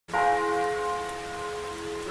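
A bell-like tone of several pitches struck at once and slowly fading, over a steady hiss like rain.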